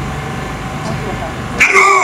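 A steady low background hum, then near the end a sudden loud shouted voice, rising sharply and falling in pitch, most likely a parade command to the band.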